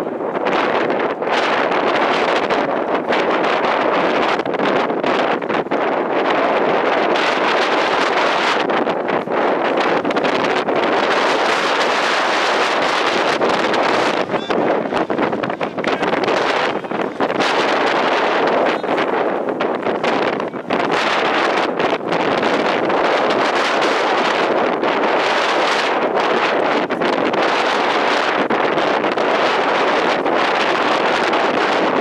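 Wind buffeting the camera microphone, a loud rushing noise that swells and dips in gusts.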